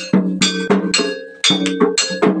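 Kuda kepang dance music: struck metal gong-chime notes ringing out in a fast, uneven rhythm of about four strikes a second, each note decaying quickly before the next.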